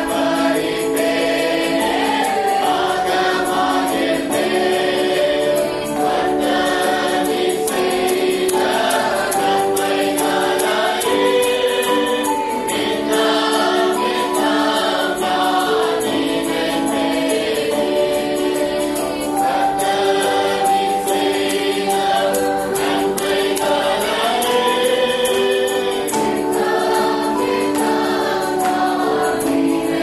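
Choir singing a gospel song with rhythmic percussion accompaniment.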